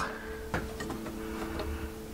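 A few light clicks and taps of hands working at a metal desktop PC case, trying to swing open a panel that is stuck, over quiet background music with steady held notes.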